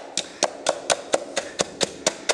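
A wooden board tapped again and again on loose granular dry levelling fill, about four even taps a second, pre-compacting the fill so it will not settle once the floor panels are laid on it.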